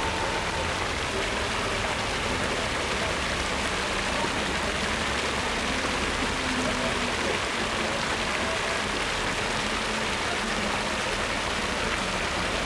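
Steady rush of water flowing through a shallow lit fountain pool, a continuous even noise.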